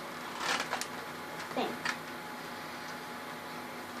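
Faint rustling of a Hot Wheels toy car's cardboard-and-plastic blister pack being handled and opened, a few brief rustles in the first two seconds.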